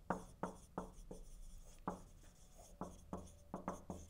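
Marker writing on a whiteboard: a faint, uneven run of short strokes and taps as words are written out.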